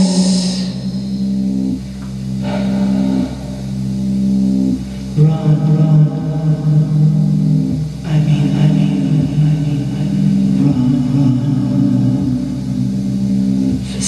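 Electronic keyboard playing low, sustained droning chords, each held for a few seconds before shifting to the next.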